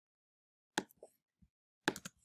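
Computer mouse and keyboard clicks while text is selected and deleted in an editor: two sharp clicks about a second apart, with a few fainter ticks between them.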